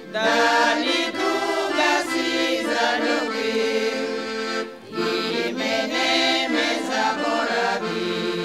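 A women's vocal group singing a traditional Bulgarian old urban song together, accompanied by an accordion. The voices pause for a breath between phrases about five seconds in, while the accordion carries on.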